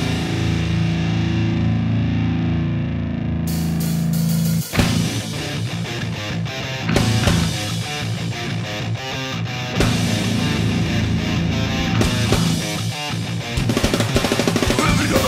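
Heavy metal music with distorted electric guitar: a low chord held and ringing for the first few seconds, then a sudden break about five seconds in and the band comes in with faster, denser playing with drum hits.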